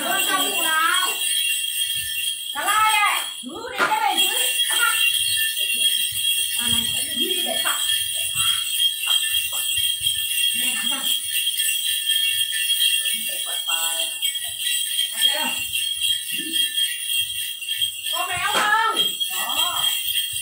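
A bunch of small metal jingle bells shaken without pause, the xóc nhạc bell cluster of a Then ritual, with short bursts of voices now and then.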